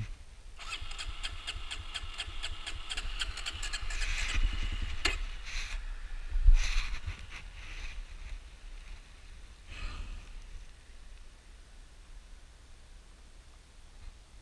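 Electric starter of an air-cooled 250 cc motorcycle cranking for about four seconds in a fast, even rhythm without the engine catching. It then stops, and a few separate clicks and knocks follow.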